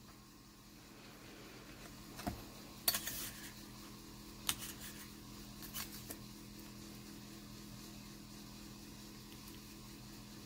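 Faint handling sounds of slicing a sheet of polymer clay with a long steel blade: a few light clicks and taps from the blade and clay on the work surface, between about two and six seconds in, over a steady low hum.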